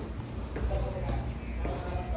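Footsteps on bare concrete stairs as someone climbs, over a steady low rumble, with faint voices in the background.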